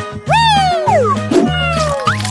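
Background music with a pulsing bass beat. Over it, a pitched sound slides downward twice in long whining glides, like a cartoon sound effect.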